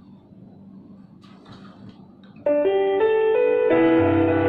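Faint room tone, then about two and a half seconds in, a keyboard with a piano sound starts playing held chords, moving to a new chord shortly before the end. These are the opening bars of a song's accompaniment.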